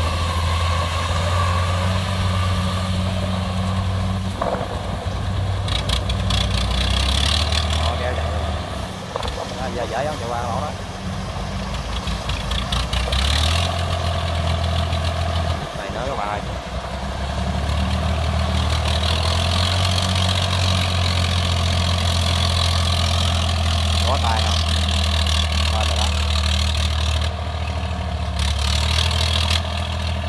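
Diesel engines of a Kubota DC70 combine harvester and a small tracked rice-hauling tractor running steadily. The engine note shifts a few times, around a quarter and around half of the way through.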